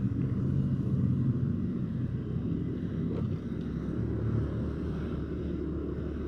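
Motorcycle engine running steadily as the bike rolls along a street.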